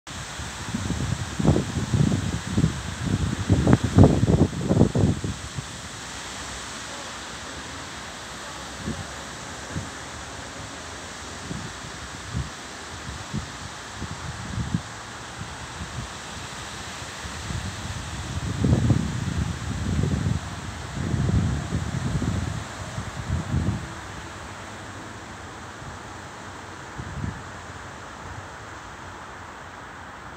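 Wind blowing through trees, the leaves rustling steadily. Gusts buffet the microphone as low rumbling surges, once in the first few seconds and again around the middle.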